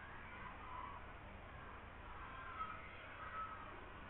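Quiet room tone with faint, indistinct sounds in the background and no clear event.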